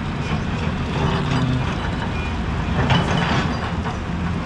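Steady rushing of a fast river mixed with the engine of a tracked excavator working further along the bank.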